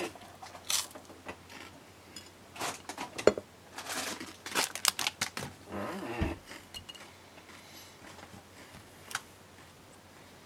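Irregular clicks, scrapes and rustles of small objects being handled, densest in the middle, with a low thump about six seconds in.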